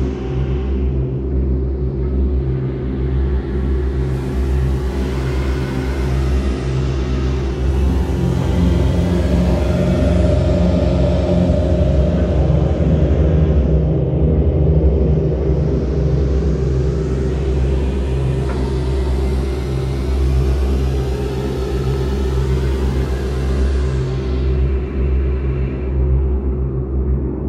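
Ambient electronic drone music: sustained low tones held steadily, with a hiss in the highs that sweeps up and down several times. The drone swells a little louder through the middle.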